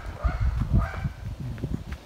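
Uneven low rumble of wind buffeting a handheld camera's microphone, with handling noise and footsteps as the camera is carried around.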